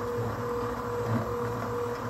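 NEMA 23 stepper motor turning the conveyor's lead screws at a steady speed, moving the adjustable rail during its width-measuring travel. It gives a constant mid-pitched whine over a low hum.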